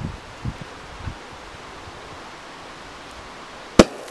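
Steady outdoor hiss of wind in the trees with a few soft low thumps in the first second. Near the end, one sharp bang from the campfire as something bursts in it.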